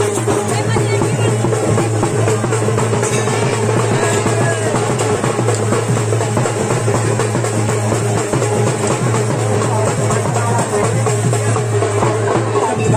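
Loud, continuous drumming, a dense run of fast strokes over a steady low drone, going without a break.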